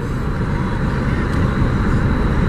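Car on the move, its steady engine and road noise heard inside the cabin.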